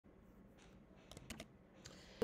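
Near-silent room tone with a few faint clicks a little over a second in, from computer controls at the desk.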